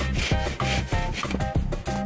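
Hand saw cutting through an aerated concrete block in repeated back-and-forth strokes, a dry rasping sound.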